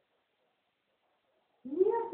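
Near silence, then about a second and a half in a child's high voice comes in, rising in pitch as it starts to sing.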